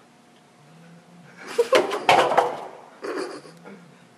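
A stack of disposable cups knocked off a table, clattering onto a hard floor in a quick burst of knocks about a second and a half in, with a few smaller knocks about a second later.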